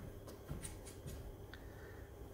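Quiet room tone with a few faint, short clicks and knocks.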